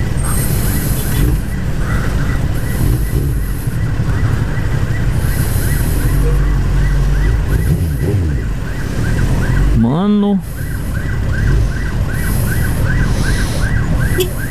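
Suzuki GSX-R SRAD motorcycle engine running low and steady while filtering through slow traffic, with an ambulance siren sounding over it: a rising wail about ten seconds in, then fast repeated yelps of about four a second.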